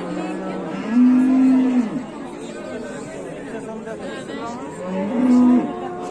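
Cattle mooing twice: a steady call lasting about a second, starting about a second in, and a shorter one about five seconds in.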